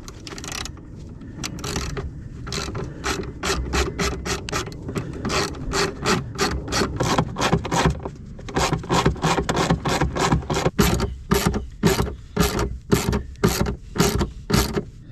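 Socket ratchet clicking in quick, even strokes, about three or four clicks a second, as 10 mm bolts holding a Jeep Wrangler TJ's wiper motor assembly are backed out.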